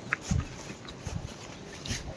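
Footsteps of a group walking on a wet paved road: three low thuds about a step apart, with a brief faint high chirp near the start.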